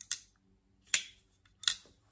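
Winter Blade Co Severn back-lock folding knife being flicked open: a sharp click as the blade snaps out and locks, then two more clicks, one about a second in and one near the end, as the knife is worked.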